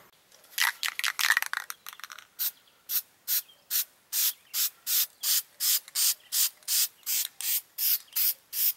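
Aerosol can of Rust-Oleum Rust Reformer being shaken, the mixing ball rattling inside: a few uneven rattles at first, then steady shaking at about two to three rattles a second.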